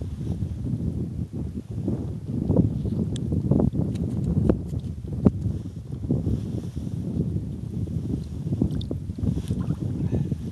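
Wind buffeting a handheld camera's microphone: a low rumble that swells and falls unevenly, with a few short clicks scattered through it.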